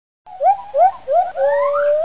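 A series of short, rising whoops with several overtones, starting about a quarter second in and coming roughly twice a second, then stretching into a longer note held steady near the end.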